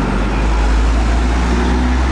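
Low, steady rumble of a motor vehicle engine running close by on the street, with a faint hum above it.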